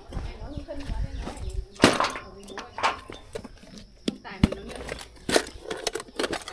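A few sharp clicks and knocks over rumbling handling noise, with faint voices.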